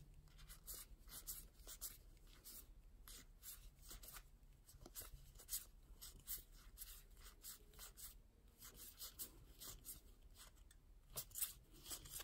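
Faint, irregular soft clicks and rubbing of Weiss Schwarz trading cards being slid off one another one at a time while being looked through.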